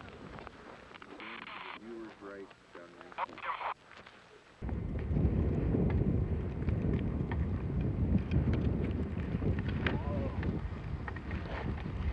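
Wind buffeting the camera microphone: a loud, uneven low rumble that starts suddenly about four and a half seconds in. Before it there is a quiet stretch with faint distant voices.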